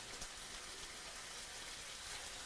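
Faint, steady crackling sizzle of food frying in a pan.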